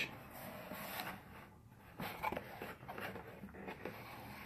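Quiet rustling and light clicks of hands handling packaging inside a cardboard box.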